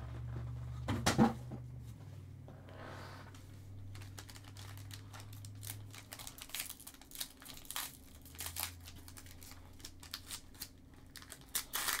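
Foil trading-card pack wrapper crinkling and crackling as gloved hands handle it and start to tear it open. The crackles come in a string of short sharp bursts over the second half.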